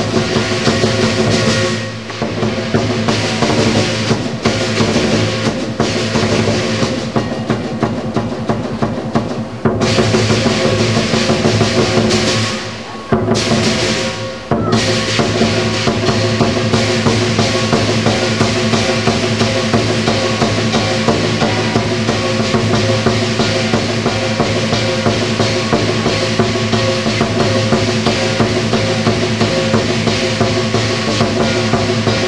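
Lion dance percussion band: a large Chinese drum with gongs and cymbals, beating and ringing in a driving rhythm. The playing drops away briefly about halfway through, then resumes at full strength.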